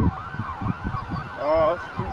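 A person's voice exclaims "oh" with a rising-then-falling pitch about one and a half seconds in, over a busy background of wavering, siren-like pitched sound.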